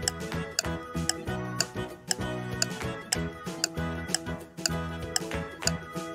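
Background music with a countdown-timer ticking sound effect, clock-like ticks about twice a second, running while the quiz timer counts down.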